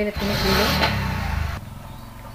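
A loud rush of noise with a low engine-like rumble for about a second and a half, then dropping to a fainter steady rumble.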